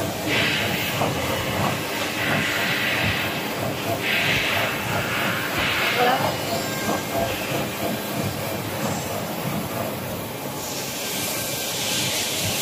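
Toilet paper and kitchen towel log band saw cutting machine running: a steady mechanical clatter of the feed chains and conveyors, with bursts of hissing that come and go several times, the longest lasting a couple of seconds.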